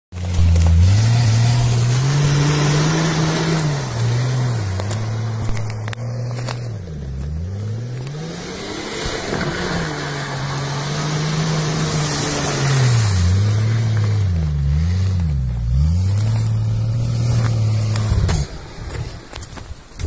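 A 4x4 SUV's engine revving hard as it drives through deep mud, its revs rising and falling again and again with several quick dips. The engine sound cuts off abruptly near the end.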